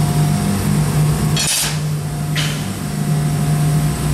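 Steady low hum of a running sheet-metal laser cutting machine. Two short metallic clatters come about a second and a half in and again just under a second later.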